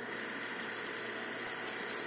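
A steady machine-like background hum, with a few faint light clicks near the end.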